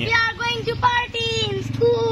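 A child's high voice singing a few short held notes, then a longer one near the end that begins sliding down in pitch, over a steady low hum.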